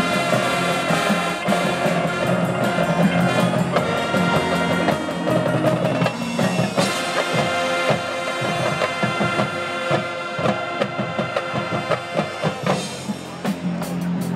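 Marching band playing a field show: the brass hold sustained chords over the drumline and front-ensemble percussion. Through the middle stretch the drum strokes come forward and the playing is more broken up, and near the end the full band swells back into a loud held chord.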